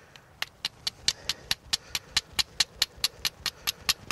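A flint blade struck repeatedly against an iron pyrites nodule to throw sparks: a fast, even run of sharp clicks, about four to five a second, starting about half a second in.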